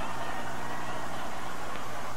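Steady background noise of an old television broadcast: an even hiss with a low hum, holding at one level without any sudden sound.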